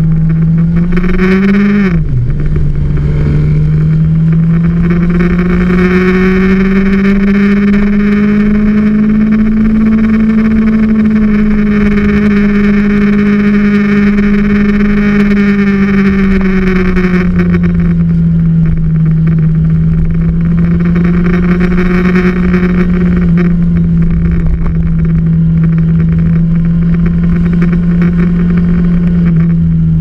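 Motorcycle engine running at a steady road speed, its pitch slowly rising and falling with the throttle, with a quick drop and recovery in pitch about two seconds in, as at a gear change. Heavy wind rumble on the onboard camera's microphone.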